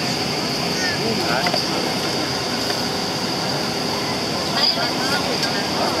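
Steady airliner cabin noise on the ground: an even rushing hiss with a constant high whine, and faint voices murmuring now and then.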